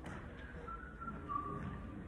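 A person whistling a few short notes that step downward in pitch, over low hall noise.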